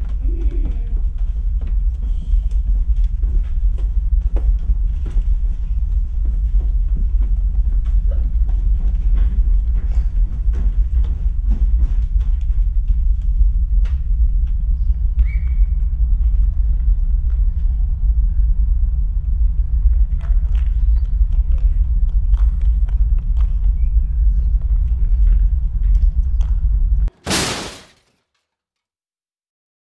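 A loud, steady low rumble with faint scattered knocks and rustles above it. It cuts off abruptly near the end, followed by a brief loud burst of noise.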